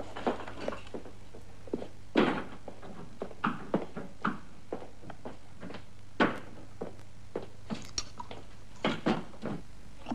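Hand tools knocking, clicking and scraping irregularly on a wooden window seat as it is worked open. The loudest knocks come about two seconds in and about six seconds in.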